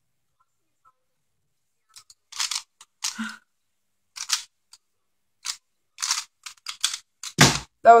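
Stickerless DaYan Pyraminx turned fast in a speedsolve: quick bursts of clicky plastic turning after a near-silent start. Near the end comes a single loud thump as the hands come down on the Stackmat timer to stop it.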